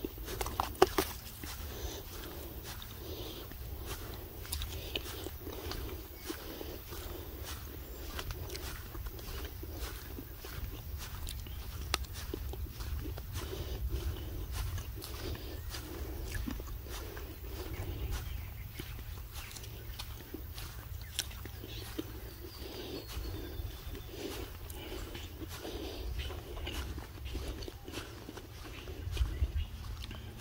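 Footsteps on a dirt track, about two steps a second, over a low rumble on the microphone.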